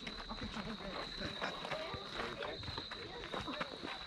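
Faint chatter of voices from players and spectators, over a steady high-pitched drone of crickets.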